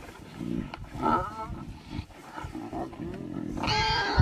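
Lions and spotted hyenas calling over a kill: low growls underneath, with pitched calls that rise and bend, the highest and loudest near the end.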